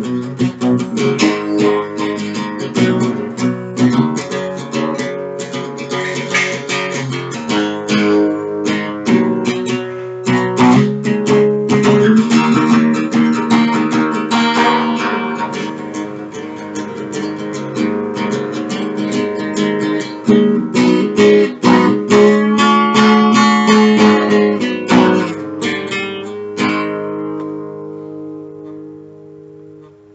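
Acoustic guitar strummed in chords at a steady pace; near the end the strumming stops and a last chord rings and fades away.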